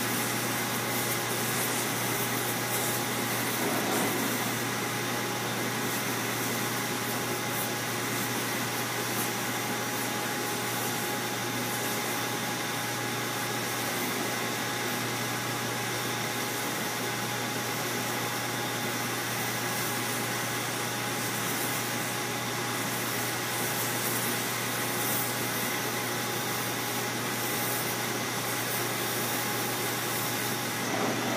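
Electric polishing machine running steadily, its 8-inch hard felt wheel charged with diamond paste and a stone carving held against it: an even motor whir with a low hum and a few thin steady tones.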